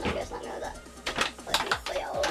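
Wire whisk clicking and clattering irregularly against a bowl as pancake batter is beaten, over upbeat electronic dance music.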